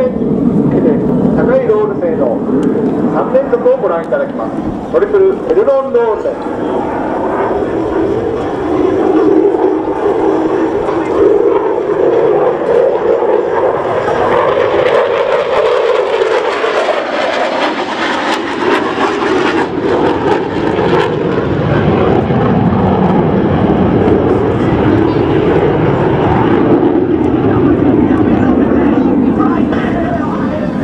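F-16 Fighting Falcon's afterburning turbofan engine: loud, continuous jet noise from the fighter in flight overhead. It grows harsher and brighter around the middle, then deepens after about twenty seconds as the jet moves off.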